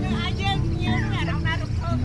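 People chatting on the deck of a river tour boat over the steady low rumble of its engine.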